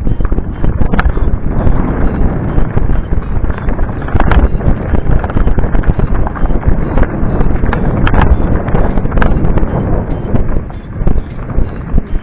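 Mountain bike rolling downhill over a loose, rocky gravel trail: wind buffeting the camera microphone, mixed with the rattle and sharp knocks of the tyres and bike over stones.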